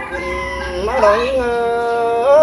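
A single voice singing a Black Thai folk courtship song, unaccompanied, drawing out a long note that bends in pitch about a second in and then holds steady.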